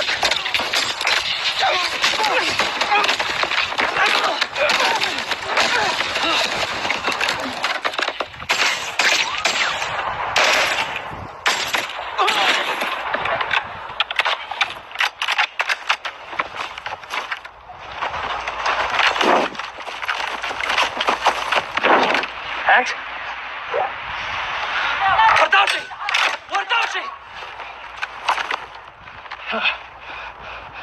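Movie firefight soundtrack: rapid bursts of automatic rifle fire and single gunshots, with men shouting in between.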